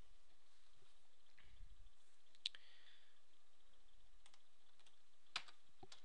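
A few sparse, sharp clicks at a computer, the loudest about two and a half seconds in and another near five and a half seconds, with fainter ones between them.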